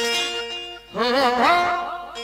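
Live qawwali music: a held note fades out, then a woman's voice comes in about a second in, singing a wavering, ornamented line into a microphone.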